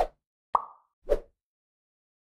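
Three short pop sound effects about half a second apart, the middle one higher-pitched, for an animated logo end card.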